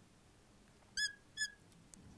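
Two short, high squeaks of a marker tip dragging across a glass lightboard while writing, about half a second apart.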